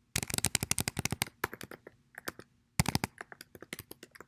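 Fast typing on a computer keyboard: a dense run of keystrokes through the first second, scattered single keys, then another quick burst near the end.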